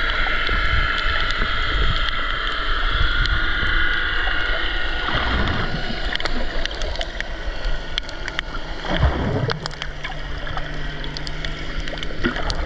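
Underwater sound through a GoPro's housing: a steady drone of a distant boat motor carried through the water, fading a little about halfway, with scattered sharp clicks from the reef. Two brief rushes of water pass the housing, about five and nine seconds in.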